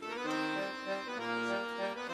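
A tune starts right after a count-in: held chords under a melody of sustained notes that change about every half second.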